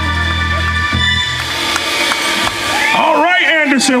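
Live band ending a song on a held chord: the low sustained bass note cuts off about a second in while the higher chord rings on and fades, and then a man's voice comes in over the PA near the end.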